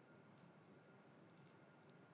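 Near silence: faint room hiss with two faint mouse clicks, one about half a second in and one about a second and a half in.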